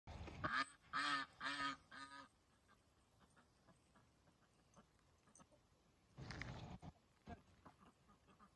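Domestic waterfowl honking four times in quick succession, about two calls a second, then faint barnyard sound with one short noisy burst a little after six seconds.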